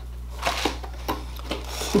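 Cardboard box and packaging being handled while a warmer is unpacked: a few soft, scattered rustles and small clicks.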